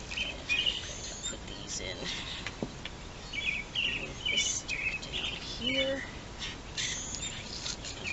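Small birds chirping: short high chirps in quick little runs, repeated many times over.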